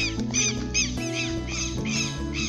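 Southern lapwings (tetéu) calling in a rapid series of shrill, repeated notes, about three a second, over steady background music.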